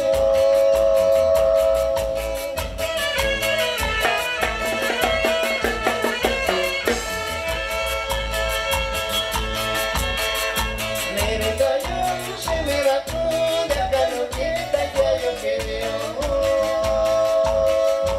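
Live Mixtec regional dance music played by a small band: violin and saxophone carrying the melody over a drum kit and guitars, with a steady beat.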